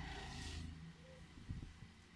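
Faint room tone in a pause between amplified speech: a low steady hum with a soft rush of air about half a second in, fading quieter toward the end.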